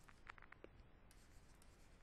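Very faint taps and light scratching of a stylus writing on a pen tablet, with a few soft clicks in the first second, otherwise near silence.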